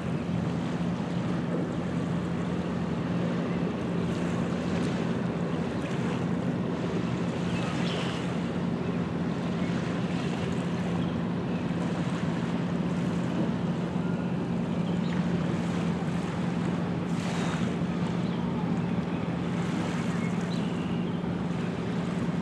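Small lake waves lapping at a stony shore, with wind on the microphone and a steady low hum running underneath.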